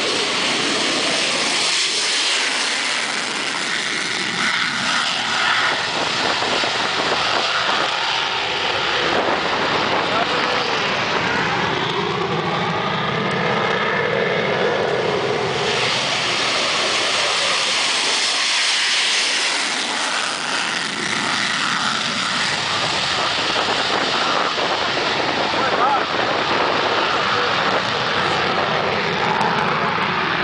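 F-16 fighter jet's engine roaring at full takeoff power in afterburner during its takeoff roll. The roar is loud and continuous, with a sweeping, phasing rise and fall in pitch as the jet passes and climbs away.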